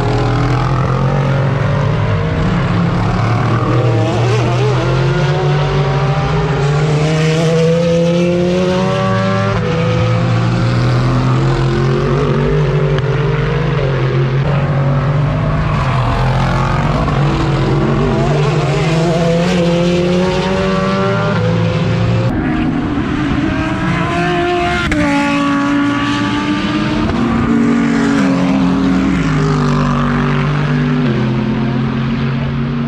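Race cars' engines at full throttle as several cars pass one after another, the pitch climbing again and again as they accelerate through the gears. The sound is loud throughout, with overlapping engines.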